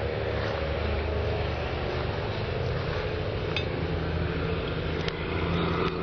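Steady low hum of an engine running at idle, even and unchanging, with a couple of faint clicks.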